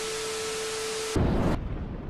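Glitch transition effect: TV static hiss with a steady beep-like test tone, both cutting off suddenly a little over a second in, followed by a short, louder low rumble.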